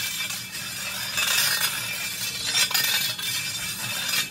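A metal shovel blade dragged and scraped along a concrete floor, a continuous harsh grating rasp with rattling clinks.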